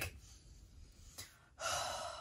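A man's audible breath, a gasp, starting about a second and a half in after a near-quiet pause.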